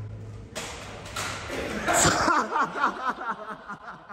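A sudden loud, noisy outburst starts about half a second in and peaks around two seconds, then breaks into men laughing hard in short, repeated bursts.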